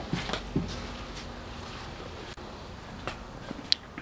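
Quiet outdoor ambience with a few soft knocks in the first second and one sharp click near the end.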